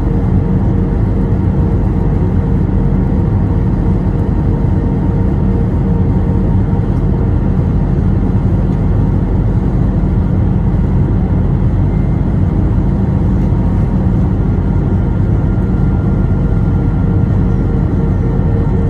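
Steady cabin noise inside an Airbus A321 descending on approach, heard from a window seat over the wing: a loud, even drone of the engines and airflow with a few faint steady hums over it.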